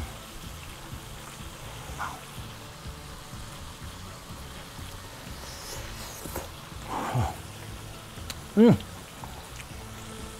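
Soft background music under someone biting into crispy fried chicken about six seconds in and chewing, then a short appreciative 'mm' near the end.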